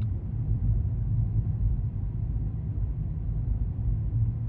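Steady low rumble of a car's road and engine noise, heard from inside the cabin while cruising at moderate speed on a paved highway.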